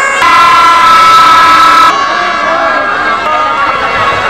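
Plastic toy horns blown in a crowd: one loud steady blast lasting about a second and a half near the start, over other horns sounding steadily and the voices of a crowd.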